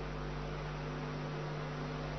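Steady electrical mains hum from the microphone and sound-system chain: a low, unchanging buzz of several fixed tones over faint background hiss.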